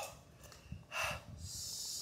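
A man's heavy breathing as he copes with the burn of a super-hot chili snack: a short forceful puff of breath about a second in, then a longer hiss of air drawn through the teeth.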